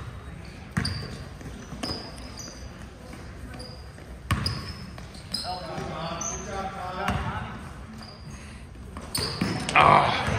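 A basketball bouncing on a hardwood gym floor in scattered knocks, with sneakers squeaking as players move. Spectators and players call out, with voices in the middle and a loud shout near the end.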